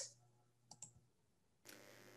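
Near silence with two faint computer-mouse clicks close together, a little under a second in.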